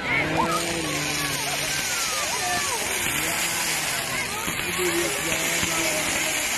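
Several voices of a crowd chattering over a steady hiss, with no firework bangs heard.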